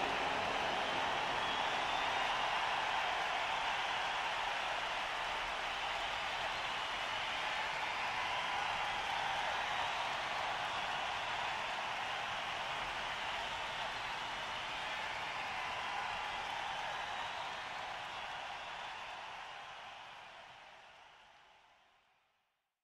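Large arena concert crowd cheering and applauding in a steady roar, fading out over the last few seconds.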